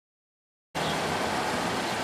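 Dead silence, then about three-quarters of a second in a steady outdoor background hiss starts abruptly and stays even.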